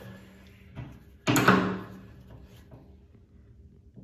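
Adjustable spanner knocking against a chrome bath tap while tightening a ceramic tap cartridge: a faint tap, then one loud clunk with a short ring.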